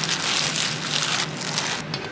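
Thin plastic bread bag crinkling and rustling as hands dig flatbread out of it. The crackling stops just before the end.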